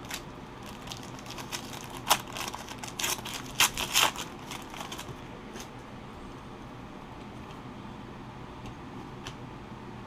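Foil trading-card pack wrapper crinkling and crackling as it is torn open and the cards are pulled out. The crackles come in quick clusters and die down about halfway through.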